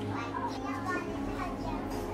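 Young children chattering and playing, with soft background music underneath.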